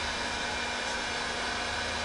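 Steady whooshing hiss of a running electric blower, with a faint steady hum under it.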